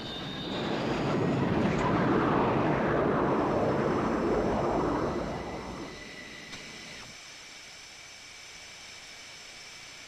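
F-4 Phantom jet fighter's engines roaring past, the roar swelling about a second in and fading away after about five seconds, leaving a quieter steady hiss with a faint high whine.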